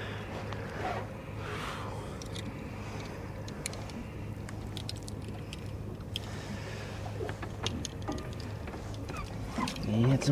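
Scattered small clicks and light knocks of fishing gear being handled in a boat, over a steady low hum.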